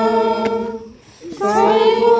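Unaccompanied singing in long held notes; one phrase ends just under a second in and the next begins about a second and a half in.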